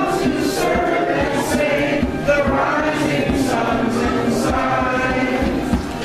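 A group of people singing together in chorus, many voices overlapping in a steady song.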